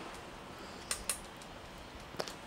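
A paintbrush ticks twice, lightly and in quick succession, against a metal watercolour tin while wet paint is mixed in its well.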